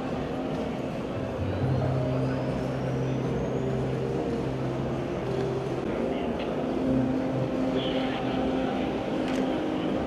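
Background music of long held low notes that shift pitch every few seconds, over the murmur of a crowded hall.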